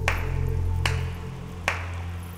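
One person's slow handclaps, three evenly spaced sharp claps a little under a second apart, over background music with a low steady drone.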